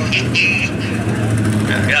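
A motor vehicle engine running steadily at a low pitch, with raised voices calling out over it.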